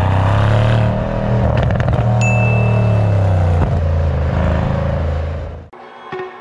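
Mercedes-AMG C63 S sedan's twin-turbo V8 exhaust under acceleration, heard close to the tailpipes. The engine note climbs, dips briefly about a second in, then rises and eases off again before dropping away just before the end.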